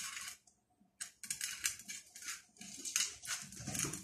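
Kittens licking and pawing at a small steel bowl on a stone floor: an irregular run of short scrapes and clicks, with a brief pause about half a second in.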